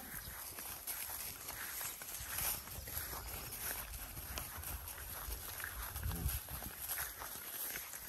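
Zebu cattle and a person walking over dry grass stubble: scattered footsteps and rustling of the dry stalks, over a low rumble. A short low call comes about six seconds in.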